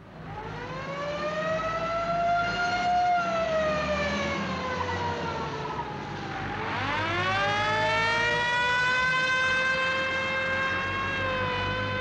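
Fire engine siren wailing: it winds up, sags slowly, dips sharply about six and a half seconds in and then climbs again to hold a high pitch. It runs over the low rumble of the trucks' engines.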